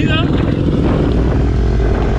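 Dirt bike engines running steadily while riding along a street, a dense low drone with no sharp revving.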